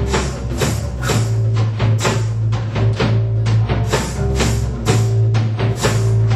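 Loud band music: drums striking in a steady beat over a heavy, sustained bass line, with held notes above.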